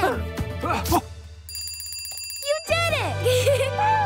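A bell rings rapidly for about a second near the middle. Around it, cheerful children's music plays with short playful vocal calls.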